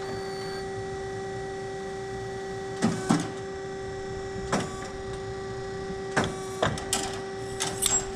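Hydraulic tube-bending machine running with a steady whine. Sharp knocks and clicks from the machine's bending head come about three seconds in, again at about four and a half seconds, and several more near the end.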